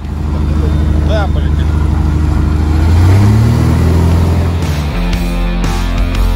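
Inside the cockpit of a Zlin Z-142 light aircraft, its six-cylinder inverted engine and propeller run with a loud, steady low drone that rises in pitch about three seconds in as power comes up for the takeoff run. Rock music comes back in near the end.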